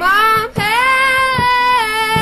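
A woman's high singing voice in a pop-folk song: a note that slides up, breaks off briefly about half a second in, then is held for over a second, over strummed acoustic guitar.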